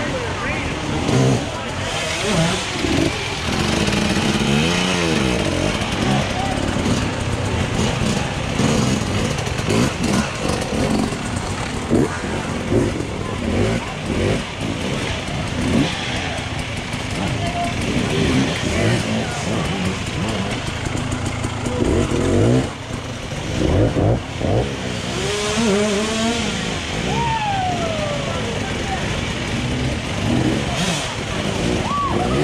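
Off-road dirt bike engines revving up and down in repeated bursts as riders work their bikes up a steep rock section, with spectators' voices and shouts throughout.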